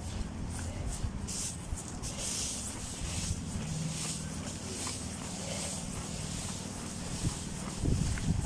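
Steady low hum of an inflatable triceratops costume's blower fan, with rustling of the inflated fabric as the wearer moves about on all fours.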